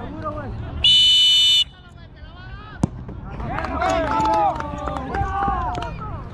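Referee's whistle: one short, steady, shrill blast about a second in, the loudest sound here, signalling the set piece to be taken. About three seconds in comes a single sharp knock, then players shouting across the pitch.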